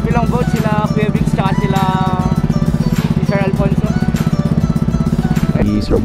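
Small engine of an outrigger boat running steadily with a fast, even pulse. It changes and drops off about five and a half seconds in.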